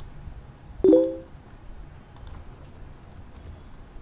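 Computer keyboard keystrokes, a few scattered clicks while number values are typed in. About a second in there is one loud, short pitched sound that dies away within about half a second.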